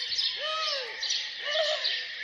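A chorus of birds chirping, many rapid high chirps overlapping, with a lower arching call about half a second in and another near the end.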